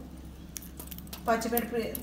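A few faint, light metallic clinks from a wire-mesh spider skimmer as fried curry leaves and green chillies are tipped onto a plate of fried masala peanuts. Speech starts about two-thirds of the way in.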